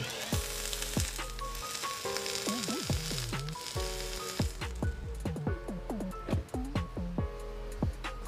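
Sub-ohm vape coil sizzling as it is fired at 75 watts, for the first four seconds or so, over background music with plucked notes.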